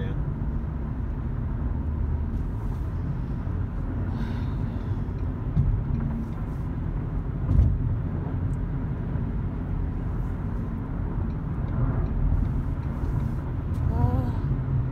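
Steady low road rumble heard inside a moving car's cabin, with a short bump past the halfway point that is the loudest sound.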